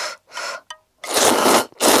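A person slurping instant cup noodles: several quick slurps, with a longer pull about a second in.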